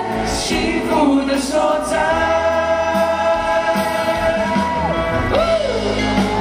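Male vocal group singing live in close harmony, holding long chords at the close of a Mandarin pop ballad, with a voice sliding down in pitch near the end.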